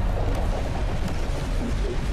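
Animated-film soundtrack: a loud, deep, steady rumble of a destruction sound effect, a wave of energy engulfing Earth, with music underneath.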